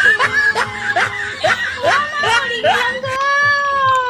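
A woman wailing and sobbing in short broken cries, then one long drawn-out wail near the end.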